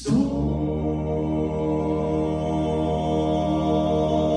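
Male gospel vocal quartet singing in close harmony. After a brief breath pause at the start, they come in together and hold one sustained chord.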